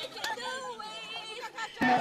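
Overlapping chatter of a group of people, with no clear words, jumping suddenly louder near the end.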